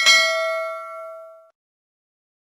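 A single bright notification-bell ding, the chime sound effect of an animated subscribe-bell click, ringing and fading for about a second and a half before cutting off abruptly.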